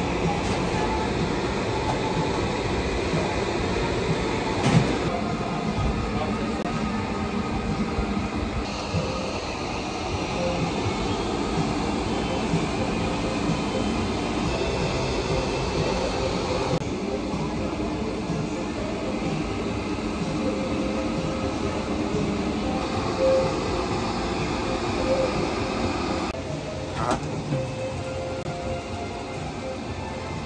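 Motorised rotating grill grate turning: a steady metallic rumble with a thin steady tone running through it, and a couple of short knocks of metal.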